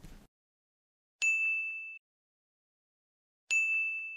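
A bright bell-like ding, sounded twice about two seconds apart; each rings for under a second and is cut off abruptly, with dead silence between.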